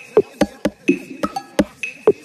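A minimal deep tech electronic track: a sparse, clicky percussion groove with hits about four a second and a short high bleep recurring about once a second.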